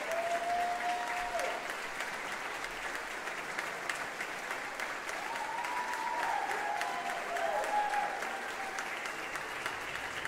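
Audience applauding in a reverberant concert hall, with a few drawn-out cheers over the clapping, one at the start and several more about halfway through.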